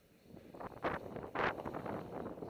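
Hiss and swish of sliding through deep powder snow, with wind rushing over the microphone. It is almost quiet at first, then two louder swishes come about a second in and half a second later.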